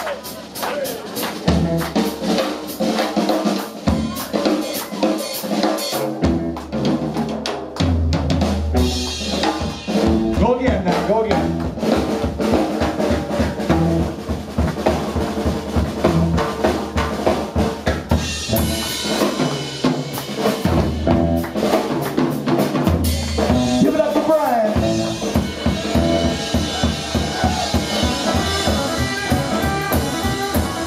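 Live rockabilly instrumental break: upright bass notes with slap clicks over a drum kit with snare and rimshots, no singing. Cymbals come in louder about two-thirds of the way through as the full band builds up.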